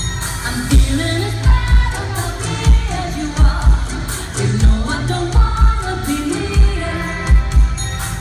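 Live pop song in a theatre: a woman singing lead over a band with a heavy, syncopated bass-drum beat.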